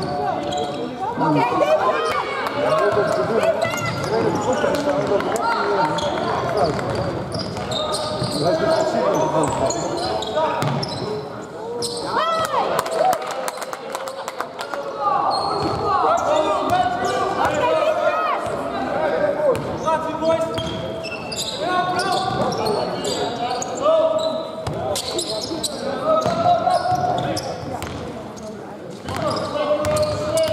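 Basketball game in play in a large sports hall: the ball bouncing on the wooden court, with sharp knocks scattered through, under indistinct voices of players and coaches calling out.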